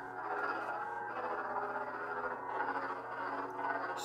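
Lightsaber soundfont hum from a Proffie-board neopixel saber's speaker: a steady, buzzing electronic drone of several pitched layers that wavers slightly in level.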